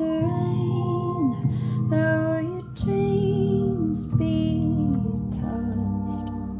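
Digital piano playing slow sustained chords, with a woman's voice holding long wordless notes that bend at their ends.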